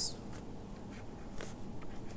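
Faint scratching and light taps of a stylus drawing on a tablet screen, with one clearer stroke about one and a half seconds in, over a faint steady hum.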